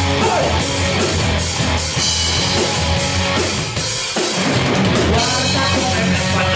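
Live rock band playing an instrumental passage: electric guitars, electric bass and a drum kit together, loud and dense. About four seconds in the band drops out briefly, then comes straight back in.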